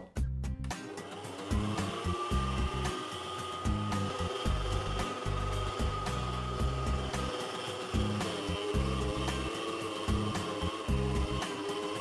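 Electric stand mixer's motor starting up about a second in and running at its lowest speed with a steady whine, its dough hook kneading a stiff bread dough.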